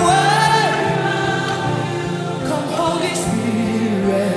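Live gospel worship music: a woman's lead voice sings a wavering, held line over sustained chords, with a choir behind.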